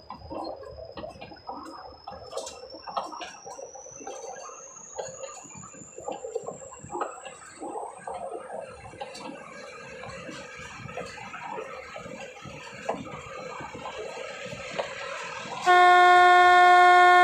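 Nilgiri Mountain Railway metre-gauge train running along the track, with irregular wheel clicks and carriage rattle, and a faint high whine slowly rising in pitch. A loud, steady horn starts abruptly just before the end.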